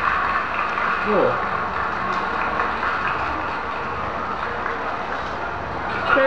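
Steady background hiss, with a short falling voice sound, like an 'mm', about a second in.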